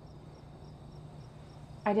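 Crickets chirping in a steady, even rhythm of about three to four chirps a second, over a faint low hum.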